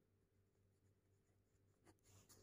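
Near silence, with faint ballpoint pen writing on paper.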